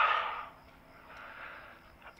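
A person's breath: a short sharp burst of breath at the start that fades quickly, then a soft, faint breath about a second in.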